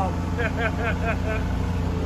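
Steady low drone of a road roller's engine heard from inside its cab as it works, with a man laughing briefly over it in the first second and a half.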